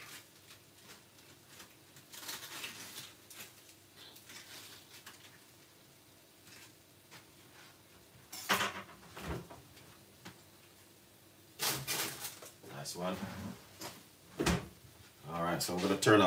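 Quiet kitchen with a few scattered knocks and clatters of things being handled, a sharp click near the end, and a few words spoken close to the end.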